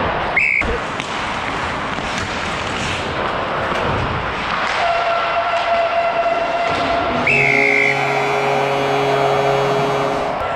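A hockey referee's whistle blown in a short blast about half a second in, over skates and scrambling players on the ice. About seven seconds in another whistle blast sounds together with a steady buzzing horn that carries on, as the goal light comes on for a goal.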